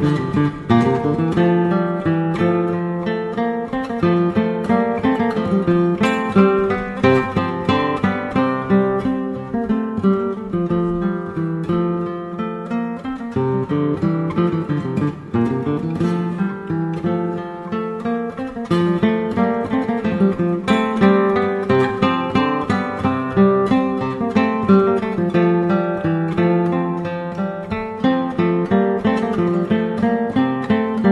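Background music played on acoustic guitar, a steady run of plucked notes and chords.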